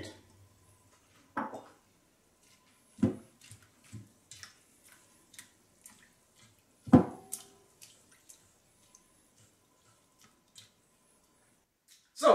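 A few knocks and clinks against a stainless steel mixing bowl, the loudest about seven seconds in with a brief metallic ring, among small wet ticks and drips as elderflower umbels are pushed down into lemon water in the bowl.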